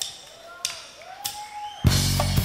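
Drumsticks clicking a count-in at an even tempo, with faint pitched arching sounds between the clicks. The full rock band comes in with drums, bass and keys just before the end.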